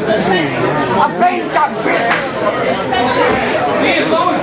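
Crowd chatter: many people talking at once, with overlapping indistinct voices and no single speaker standing out.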